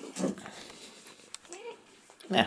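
Domestic cat vocalizing close to the microphone: a short sound just after the start, then a brief rising-and-falling mew about one and a half seconds in.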